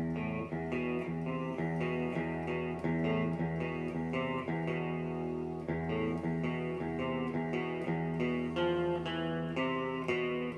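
Electric guitar played through an acoustic-guitar simulation setting on a Zoom effects pedal, clean, picking a riff of ringing notes that start suddenly and run on steadily.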